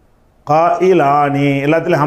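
A man's voice chanting a repeated phrase in a drawn-out, sing-song recitation. It starts about half a second in, with long held notes.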